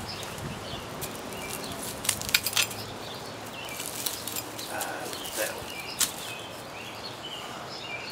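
Handling noise as a rock is picked up from dry leaf litter and grass: rustling with a cluster of sharp clicks and knocks about two seconds in, and one more knock near six seconds.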